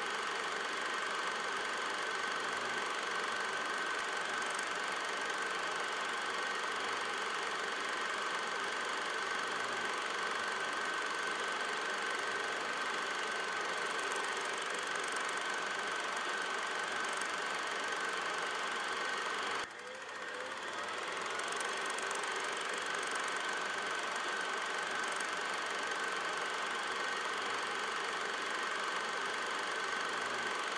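A steady machine-like running noise with a constant high whine over an even hiss. About twenty seconds in it cuts out abruptly, then climbs back up to the same steady level over a second or two.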